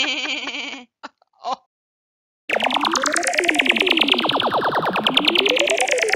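A short laugh from a cartoon voice, then after a second of silence a loud electronic sound effect: a rapid pulsing warble whose pitch rises slowly and then falls back down.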